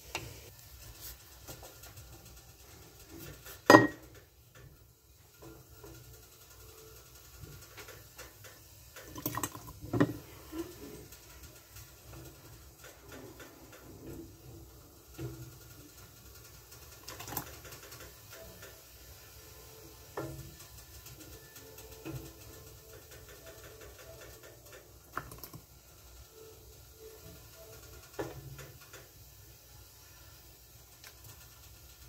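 Scattered knocks and clinks of a ladle against a stainless steel pot and a canning funnel as thick sauce is ladled into a glass pint jar. The sharpest knock comes about four seconds in and another around ten seconds, with lighter taps between.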